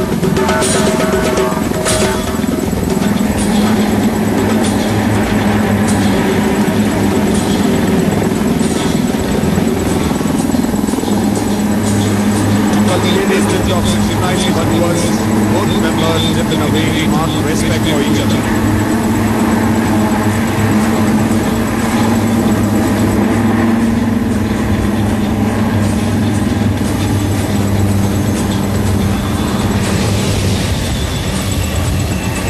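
HAL Dhruv display helicopters flying overhead, a steady rotor and engine drone heard through a TV broadcast, mixed with music and indistinct voices.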